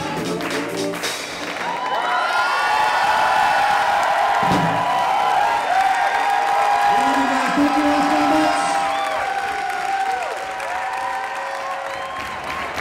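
A live swing band's music ends about two seconds in, and a large crowd breaks into loud cheering and screaming, many voices at once, easing off a little near the end.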